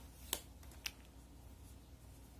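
Two small sharp clicks about half a second apart from hands working an aluminium crochet hook through cotton yarn, over a faint low steady hum.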